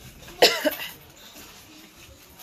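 A woman coughing briefly into her hand, two quick coughs about half a second in.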